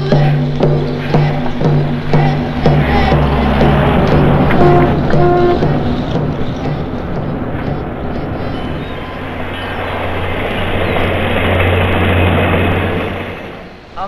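Evenly spaced drum beats over a sustained low tone for about six seconds, giving way to a steady rush of car engine and road noise with a low hum, which swells and then cuts off just before the end.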